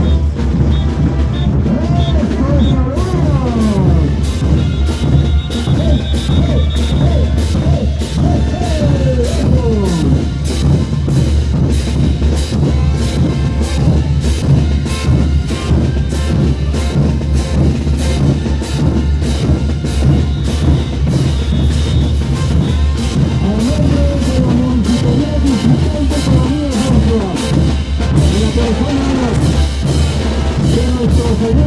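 Parade band music with a heavy bass drum and cymbal crashes keeping a steady beat, about two beats a second, under a sliding melody.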